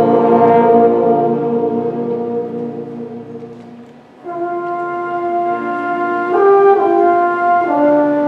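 Concert band music: a sustained brass chord fades away over the first half, then a quieter passage begins about four seconds in with held notes that step to new pitches twice.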